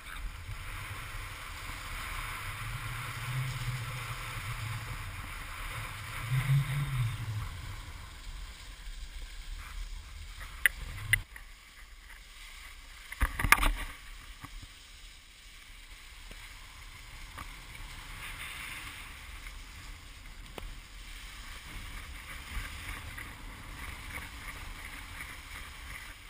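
Skis sliding and scraping over packed snow with wind rushing on a pole-mounted GoPro's microphone: a steady rough hiss and rumble. A few sharp knocks come around the middle, the loudest a little past halfway.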